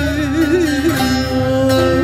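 Live Turkish folk song (türkü) played by a small ensemble: a woman's voice carries a wavering, ornamented melody that settles into a held note about a second in, over bağlama and other plucked strings.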